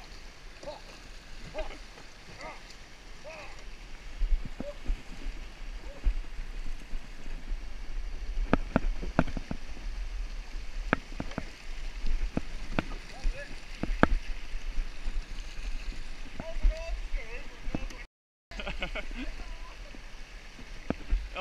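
Fast-flowing floodwater rushing past a fallen tree, with a steady low rumble. Through the middle comes a series of sharp knocks as the plastic kayak and paddle bump against the log.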